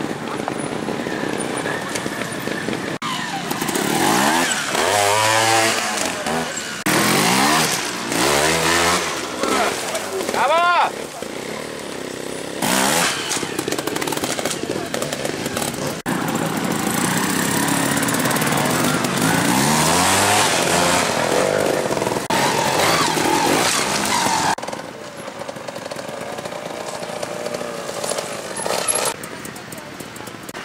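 Trials motorcycle engines revving in repeated short bursts, pitch rising and falling sharply as the bikes are driven up a steep dirt and rock section. A quick high rise comes around ten seconds in.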